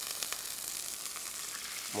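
A frying pan of hot oil with fried shallots, garlic and chilli sizzling steadily, with a few crackles at first, as boiling water from a thermos flask is poured in.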